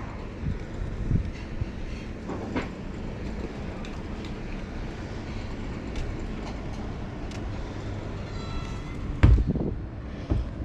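Wind rumbling on the camera microphone while walking on a gravel path, with faint irregular footstep clicks. Near the end, a brief high squeak and then a loud thump.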